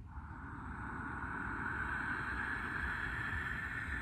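A long, slow breath out: a steady breathy hiss that begins suddenly, swells a little and holds for about four seconds, over a low background rumble.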